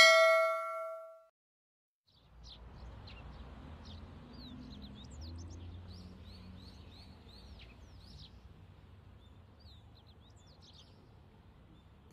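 A bright bell-like notification chime rings out and fades over about a second. After a short silence comes a quiet outdoor ambience: birds chirping over a low, steady rumble.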